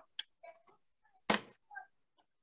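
Mostly quiet video-call audio with a few faint, short clicks and one brief noisy puff, like a breath or soft laugh, about a second and a half in.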